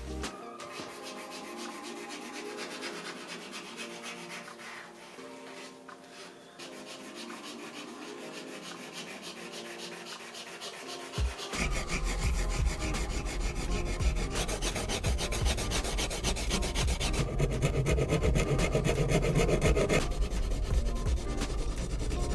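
Acrylic paint marker nibs rubbing against canvas in quick repeated strokes. About halfway through a deep low bass comes in suddenly, and the second half is louder.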